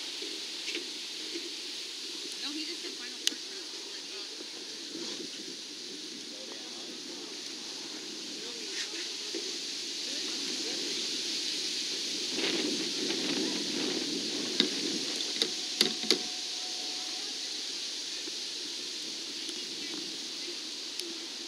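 Outdoor ambience of indistinct, murmured voices over a steady hiss, with a few sharp clicks in quick succession about three-quarters of the way through.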